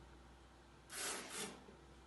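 A taster slurping wine from a glass, drawing air through it to aerate it in the mouth: two short airy sucks about a second in, the second a moment after the first.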